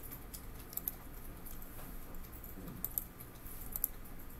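Scattered clicks from a computer keyboard and mouse, a few of them close together near the end, over a steady low hum.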